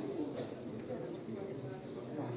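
Indistinct murmur of several voices talking quietly in a large hall, with no clear words.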